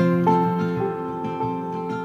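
Acoustic guitar being played, its notes ringing on, with a few new notes picked during the pause between sung lines.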